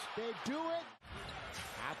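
A man's voice briefly, then, after an abrupt edit about a second in, the arena sound of an NBA game broadcast: crowd noise with a basketball bouncing on the court.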